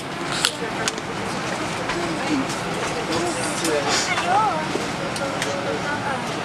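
Steady airliner cabin noise, with low voices and a few sharp clicks and rustles.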